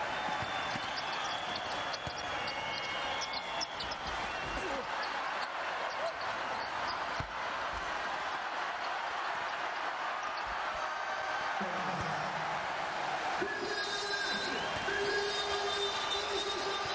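Basketball arena crowd noise with a basketball bouncing on the court during play. Near the end a few held tones rise over the crowd.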